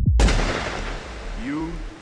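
The dance beat cuts off and a single sudden loud bang, like a blast or gunshot, fades away over about a second. A voice starts near the end.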